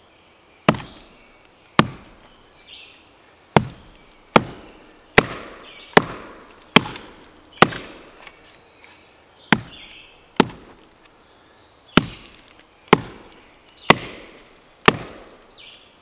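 Large Kodiak chopping knife struck repeatedly into a knotty round of wood to split it, about fourteen sharp chops at roughly one a second, the blade working through a knot.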